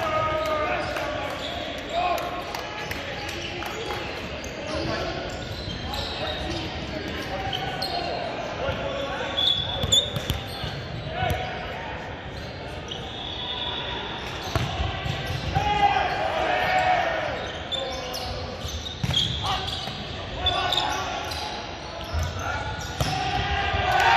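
Volleyball in a large echoing gym: players' shouts and calls, with a ball bouncing and being struck on the hardwood court several times.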